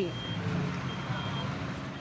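Street noise of a scuffle between riot police and protesters: a steady low rumble, with two short, high, steady beeps in the first second and a half.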